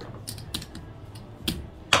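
Casino chips clicking against each other as they are picked up and stacked by hand, a few separate sharp clicks, the loudest near the end.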